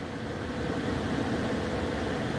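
A steady low background rumble with a faint even hum, between spoken phrases.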